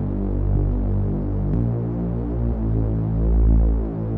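Background music: slow, sustained low synthesizer chords that change about once a second, with no beat.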